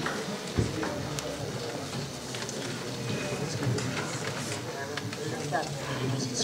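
Indistinct, low murmuring voices in a meeting room, with a single dull thump of a table microphone being handled about half a second in.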